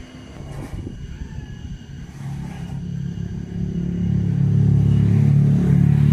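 A low, engine-like rumble that swells steadily louder, the edited-in intro sound of the video rather than anything in the cattle yard.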